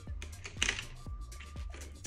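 Wooden pencils clicking and tapping against each other and their tray as a pencil is set back and another picked out: a few light, sharp ticks, two close together about half a second in.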